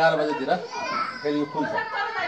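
Speech: people talking, with no other sound standing out.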